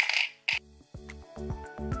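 A brief clatter of plastic hair clips against a clear plastic organizer box, with a sharp click about half a second in. Background music with a steady beat then comes in.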